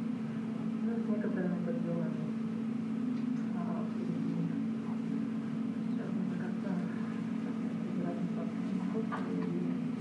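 Playback of a self-filmed video over room speakers: a steady low hum with faint, indistinct voices in it.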